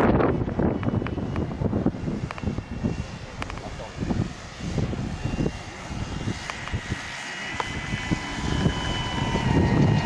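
Large radio-controlled model autogyro's engine and propeller running as it comes in low and passes close. A steady high whine grows louder over the last few seconds and steps down slightly in pitch near the end as the model goes by.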